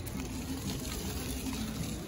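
Rental electric kick scooter rolling over a gravel path: a steady gritty crackle from the tyres on the grit, with a faint low hum underneath.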